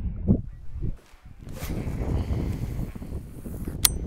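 Wind rumbling on the microphone and water moving around a boat on an open lake, with one sharp click near the end.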